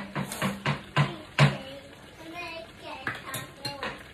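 Small metal spoon clinking against a wok as it dips into the stew's sauce for a taste: a quick run of taps in the first second and a half, the loudest about one and a half seconds in, then a few lighter taps near the end.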